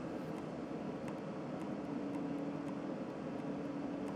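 Steady low background hiss with a faint hum in the second half, and no distinct events.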